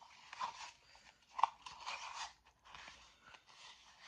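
Sugar-based lip scrub being stirred in a small plastic tub: gritty scraping and crunching in repeated strokes, with one louder scrape about one and a half seconds in.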